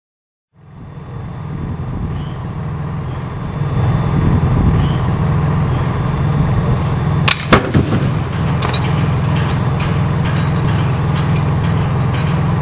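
A 1/3-scale model of the ENUN 32P spent fuel cask slamming onto the impact pad in a drop test: two sharp bangs about a third of a second apart, a little past the middle, followed by a few faint knocks. Under it a steady low rumble starts just under a second in.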